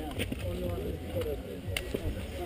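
Quiet talk in the background over a steady low rumble, with one sharp click near the end.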